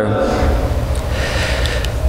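A man's audible breath drawn in close to a pulpit microphone, a noisy rush lasting most of two seconds, between spoken phrases.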